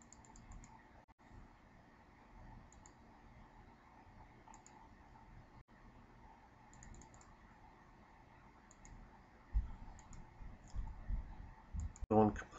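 Faint computer mouse clicks, spaced a second or two apart, each click placing a tracing node. A few low thumps come near the end.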